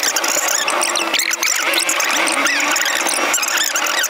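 Fast-forwarded footage audio: speech and car sound sped up into a high-pitched, squealing chipmunk chatter of quick rising and falling chirps, with no low end.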